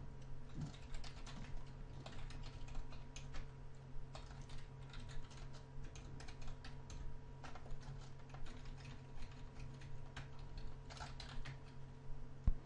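Typing on a computer keyboard: a run of quick, irregular keystrokes with short pauses between bursts, over a steady low hum.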